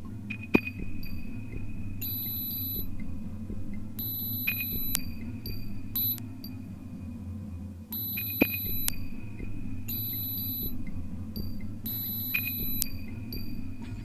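Experimental electronic music: a low droning pulse under short, repeated high-pitched beeps and a few sharp clicks.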